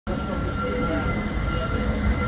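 A steam locomotive and its carriages roll slowly into a station: a steady low rumble with thin, steady high squealing tones, typical of wheel flanges or brakes as the train nears the platform.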